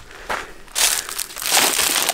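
Footsteps crunching through dry leaves, dead palm fronds and undergrowth, starting about a second in.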